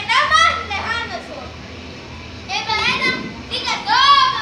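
Children's voices calling out in short, high-pitched outbursts, three times, with a quieter stretch between the first and second.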